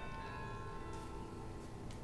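Faint room tone with a steady, faint hum of several held tones and no speech.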